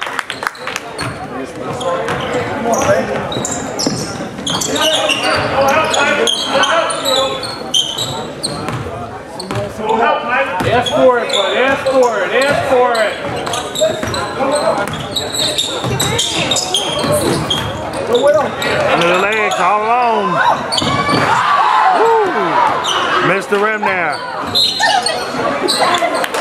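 Basketball bouncing on a hardwood gym floor during play, repeated knocks of the dribble, with voices calling out on the court, echoing in a large hall.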